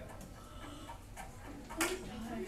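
A few light clicks over quiet classroom room noise, with a sharper click near the end: a stylus tapping an interactive whiteboard as a new blank page is opened.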